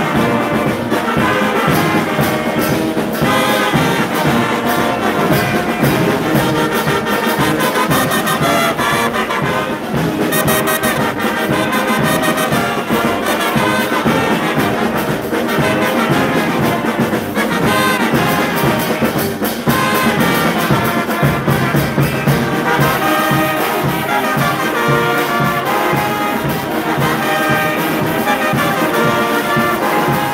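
A brass band playing live: trumpets, flugelhorns and cornets lead the tune together with saxophones and a clarinet, over a steady drum beat.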